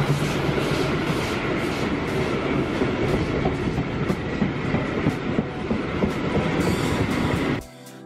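Steam locomotive and its coaches passing close by: a loud, dense, steady rumble and clatter of the train on the rails. It cuts off abruptly just before the end and music takes over.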